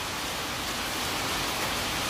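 A steady, even hiss with no distinct events in it.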